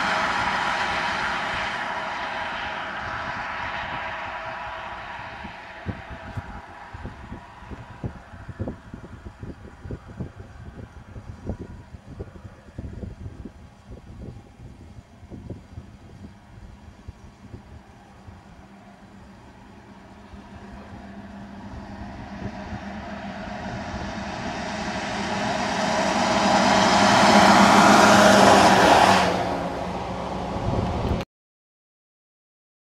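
Road traffic on a highway: a car's tyre and engine noise fading as it drives away, then another vehicle approaching, growing steadily louder and passing close by near the end with a sudden drop-off as it goes past.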